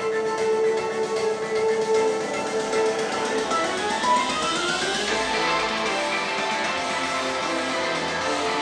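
Light-show music playing from a Tesla Model Y's speakers, with plucked, guitar-like notes and a rising run of notes about halfway through.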